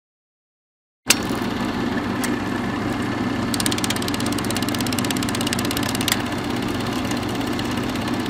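Mechanical, engine-like sound effect that starts suddenly with a click about a second in and runs steadily. A stretch of rapid, even ticking comes in the middle, with a few sharp clicks along the way.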